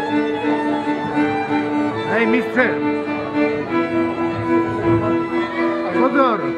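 Folk music led by fiddles, playing sustained chords that shift about halfway through, with short gliding high notes about two seconds in and again at the end.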